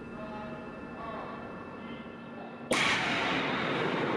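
A spoken countdown over a steady hum. Then, about two and a half seconds in, the JF-12 hypersonic shock tunnel fires: a sudden loud blast turns into a steady rushing noise that carries on.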